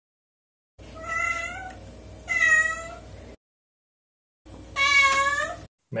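A cat meowing three times: two meows close together, then a third after a pause of about a second.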